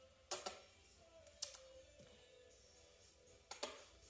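A handheld dog-training clicker giving short, sharp double clicks, three times, marking the puppy's sit during clicker training.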